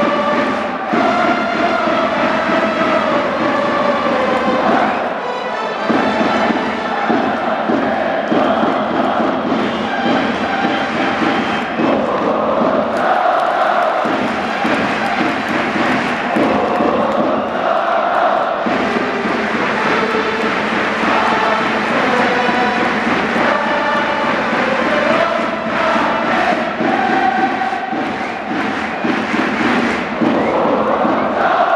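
Baseball stadium crowd chanting a cheer to music: a steady din of many voices with a melody that keeps moving up and down in pitch.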